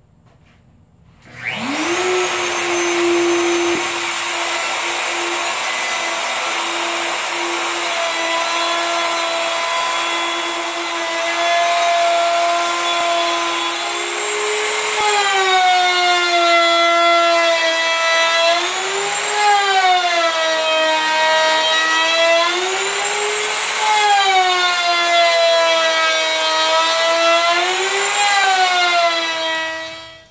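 Bosch plunge router on a circle-cutting jig, switched on about a second and a half in, spinning up to a steady high whine. From about halfway the bit cuts into the workpiece: the motor gets louder and its pitch sags and recovers several times under the changing load as it is pushed around the pivot. It cuts off at the very end.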